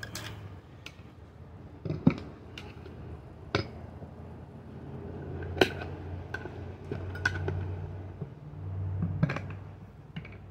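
Irregular sharp metallic clicks and clinks as a flathead screwdriver is picked up and worked as a lever between a rubber tire bead and the mower's metal wheel rim to pry the tire off. A low steady hum runs underneath.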